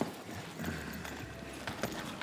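A red handbag being handled at a counter, with a few light clicks and knocks as its clasp and body are worked over a faint steady background.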